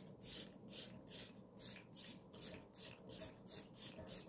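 Sephora makeup setting spray pumped over and over, about three short fine-mist hisses a second.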